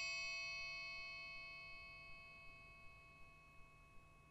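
The tail of a single struck bell-like chime, an audio logo sting, ringing out: several steady tones fade slowly away to almost nothing by the end.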